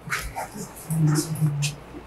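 A short low hum from a person's voice in the middle, with brief scuffing or rustling noises at the start and near the end.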